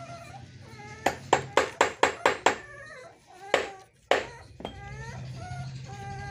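Hands patting and pressing down chopped straw substrate in a plastic crate: a quick run of about six sharp pats about a second in, then two more single pats a little later.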